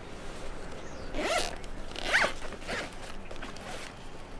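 A zipper, likely on a scripture case, pulled open in two quick strokes about a second apart, the second louder, with light rustling after.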